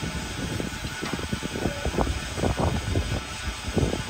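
Wind buffeting the microphone: an uneven, gusting low rumble, with a faint steady hiss above it.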